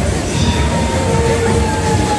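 Maxi Jumping fairground ride's machinery running in motion: a loud low rumble with a thin whine over it.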